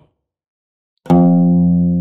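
After a second of silence, a single open oud string tuned to F is plucked with a risha and rings on, slowly fading: the first note of the tuning being demonstrated.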